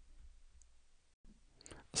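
Near silence: faint room tone between spoken sentences, with a faint click or two, and a brief total dropout of the sound about a second in where the recording is cut.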